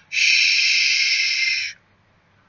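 A man makes a long voiceless 'shhh' hiss with his mouth, a steady rush of breath lasting about a second and a half before it stops.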